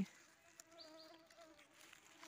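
A flying insect buzzing faintly, a steady hum that wavers slightly in pitch and breaks off shortly before the end.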